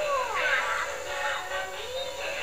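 Animated Halloween toy playing its built-in song, a synthetic singing voice over music, with a falling swooping tone about half a second in.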